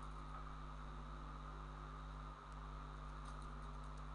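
Steady low electrical hum and microphone hiss, with a few faint computer-keyboard key clicks in the second half.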